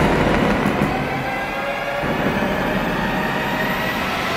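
A steady, dense rumbling roar, the drawn-out rumble and debris noise of an airstrike explosion.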